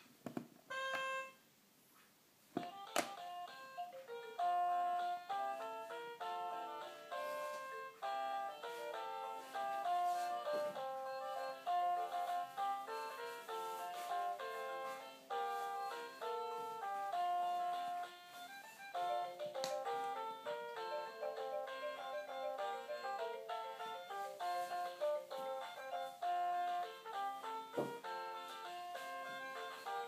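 VTech P'tite Trompette baby toy trumpet playing its electronic tune, a melody of short stepped notes. A few notes sound at the start, then a brief pause and a click about three seconds in, after which the tune plays on without a break.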